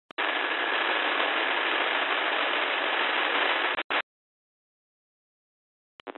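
Airband scanner receiver breaking squelch with a click onto a steady radio hiss with a faint high whistle. The hiss runs for nearly four seconds, stops with a short final burst and cuts off suddenly.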